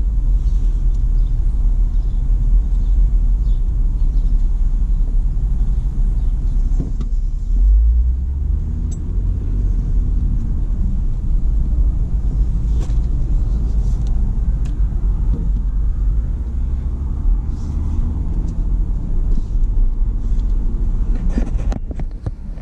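Steady low rumble of a Jeep's engine and tyres heard from inside the cabin as it drives slowly, swelling a little about eight seconds in.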